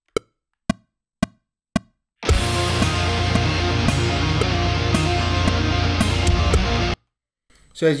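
Four click-track clicks about half a second apart, then a recorded rock song with drums and guitar plays back for about four and a half seconds and cuts off suddenly.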